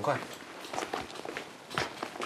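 Footsteps: a few irregular steps, fairly faint.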